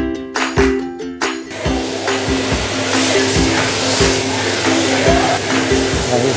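Background music with a steady beat; about a second and a half in, a loud steady rush of blowing air from an air-shower booth's blowers joins it.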